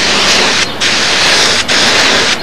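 Compressed-air gravity-feed spray gun spraying a first coat of silver paint as a filler coat, a steady loud hiss that dips briefly twice.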